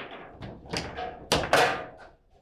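Table football ball and rod figures knocking in play: a handful of sharp wooden-plastic knocks, the loudest a hard strike about a second and a half in.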